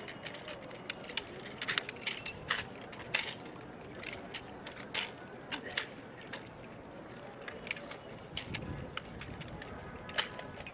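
Irregular sharp metallic clicks and clacks of 7.62 mm automatic rifles being handled by several soldiers at once: parts being fitted and actions worked as the weapons are put back together in a blindfolded drill.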